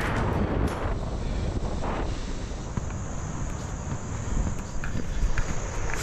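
Steady wind buffeting on an action camera's microphone as a paraglider flies.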